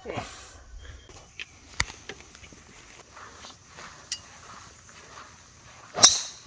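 Faint outdoor background with a sharp click about two seconds in and a smaller one near four seconds. Right at the end comes the crack of a driver striking a golf ball off the tee.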